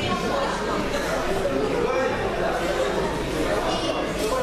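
Crowd chatter echoing in a large hall: many people talking at once, no single voice standing out, at a steady level.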